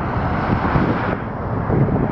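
Strong wind buffeting the microphone: a loud, gusty rumble with hiss that thins out about a second in.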